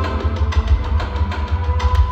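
Routine music played over a hall's loudspeakers, with a heavy pulsing bass and a steady beat.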